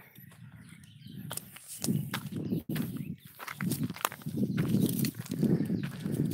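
Footsteps and rustling of someone walking along a trail through grass and brush, with sharp snaps and clicks. It is quiet at first and gets louder about two seconds in, with thuds roughly every half second.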